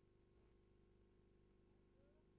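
Near silence: only a faint steady hum and hiss.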